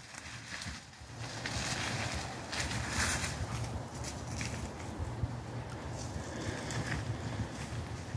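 Wind noise rumbling on the microphone, with faint rustling and crackling of dry undergrowth.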